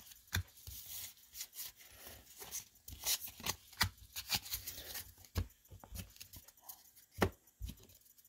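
Cardboard baseball cards being handled: an irregular run of soft scrapes as the cards slide against one another in the hand, with a few sharper taps as they are set down on a table mat.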